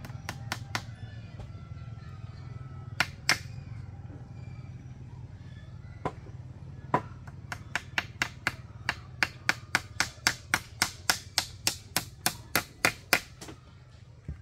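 Sharp knocks of a hand tool striking wood or bamboo. A few scattered strikes come first, then a quick, regular run of about three strikes a second through the second half, over a steady low hum.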